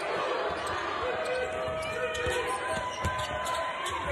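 Court sound of a televised basketball game: a ball bouncing on the hardwood floor amid the hum of the arena crowd, with a few short squeaky tones, like shoes on the court, through the middle.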